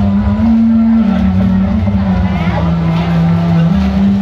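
Loud sound-system music: a held low melody line stepping between a few notes over heavy, pulsing bass.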